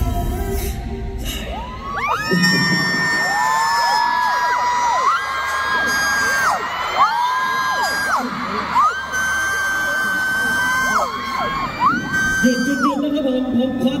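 Live concert sound at the end of a pop song performance: music with a run of held high tones, each sliding up at the start and down at the end, mixed with crowd cheering in the arena.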